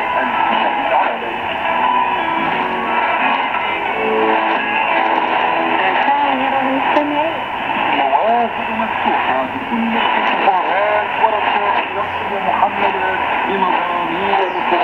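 Music from China Radio International's Arabic service, received on 6100 kHz shortwave through a Sony ICF-SW7600GR portable receiver's speaker. It sounds thin, with a steady background noise from the radio signal.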